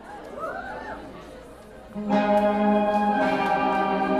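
Audience chatter with a couple of rising-and-falling whoops, then about halfway through a sustained electric guitar chord starts ringing out, moving to a new chord about a second later as the opening song begins.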